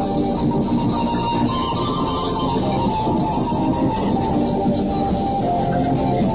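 Live Andean folk band music led by a zampoña (panpipe) melody over band accompaniment, with a steady high hiss.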